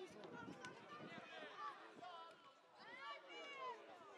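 Faint, high-pitched children's voices shouting and calling, with a few short knocks in the first second and a louder rising-and-falling call about three seconds in.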